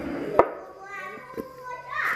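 A child's voice in the background, with a sharp knock about half a second in.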